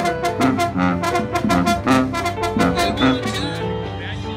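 A Mexican banda brass band playing live: the sousaphone and horns carry held notes over a bass drum struck in a quick, even beat.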